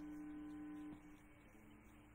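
Faint steady electrical hum that drops to a quieter hum about a second in.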